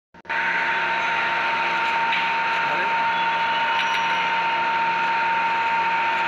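Steady machine noise starting a moment in: a continuous whirring with a constant mid-pitched whine running through it.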